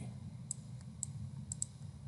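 Four faint, sharp clicks over a low steady hum, the last two close together: computer clicks as the presentation slide is advanced.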